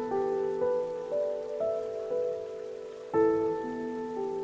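Slow solo piano melody, single notes about every half second that ring on and fade, with a fuller chord struck about three seconds in. Underneath runs a faint, steady rush of stream water.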